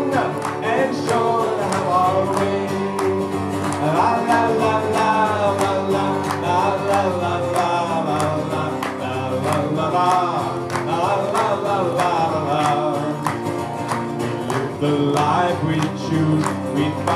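Acoustic guitar strummed steadily, with a voice singing the melody over it.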